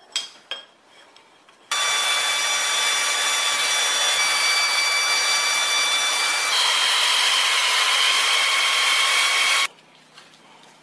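A few light metallic clicks, then a power tool running continuously for about eight seconds: a loud, steady hissing whir with a few fixed whining tones that step in pitch twice. It starts and stops abruptly.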